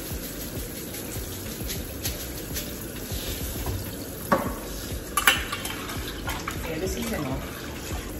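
Rice being washed in a pot of water: water sloshing and running, with two sharp clinks of kitchenware about a second apart a little past halfway.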